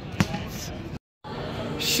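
A single sharp thump of a futsal ball striking, just after the start, over background voices. About halfway through the sound drops out for a moment, then comes back as the hubbub of a crowd.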